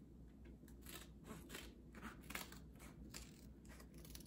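Faint, irregular small clicks and crisp rustles, a few per second, over a low steady hum: hands handling small objects or packaging.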